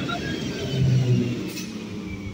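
A conventional EMU electric local train running past close by: a heavy rumble of wheels on rail, loudest about a second in, with a faint whine slowly falling in pitch and a short click about one and a half seconds in.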